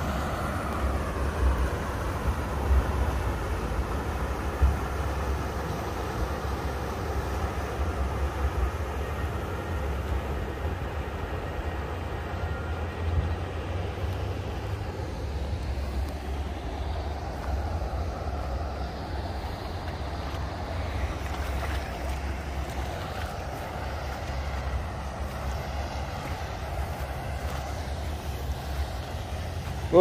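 Inland motor cargo barge passing on the river, its engine a low steady drone under an uneven low rumble.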